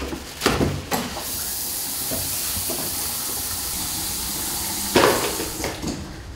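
Restroom sink tap running: a steady hiss of water that starts about a second in and stops about five seconds in with a sharp knock. A few clicks and rustles of paper towels and books on the sink come before it.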